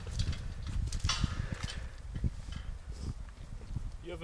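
Wind rumbling on the microphone, with a run of irregular light knocks and clicks.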